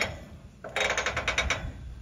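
Squeeze mechanism of an Arrowquip Arrowlock 8800 cattle squeeze chute clicking as the squeeze handle is worked, in its cow setting: a rapid run of about nine clicks, roughly ten a second, starting about three quarters of a second in and lasting under a second.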